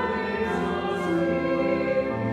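Church choir singing a hymn in slow held chords, with the hiss of sung consonants about half a second and a second in.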